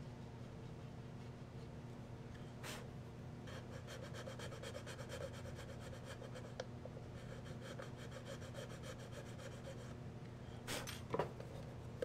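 A pointed metal hobby tool scratching and scraping at epoxy putty filler on a resin part, a fine rapid scratchy sound from about three and a half seconds in until about ten, testing whether the putty has cured hard. A couple of knocks about eleven seconds in as the part is handled.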